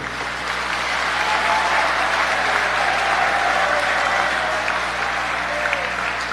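Congregation applauding: a dense spell of clapping that builds over the first couple of seconds and eases slightly near the end.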